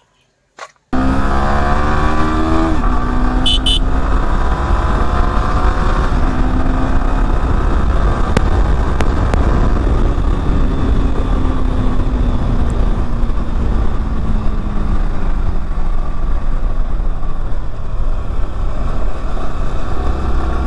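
Yamaha R15 V4's 155 cc single-cylinder engine starts in abruptly about a second in. Its pitch climbs steeply as the bike accelerates, then it settles into a steady cruise with a slow rise and fall in engine note. Heavy wind rumble on the microphone runs underneath.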